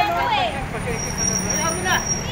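Street traffic: a vehicle engine running with a steady low hum under people's voices, and a thin, steady high-pitched whine coming in about halfway through.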